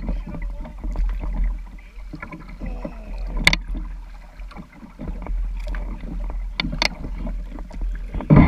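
Sun Dolphin Aruba 10 plastic kayak moving down a river, heard through a camera mounted on its bow: water lapping at the hull over a steady low rumble, with a few sharp knocks, the loudest about three and a half seconds in and two close together near the end.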